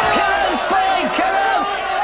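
Crowd of boxing spectators shouting and cheering, many men's voices overlapping.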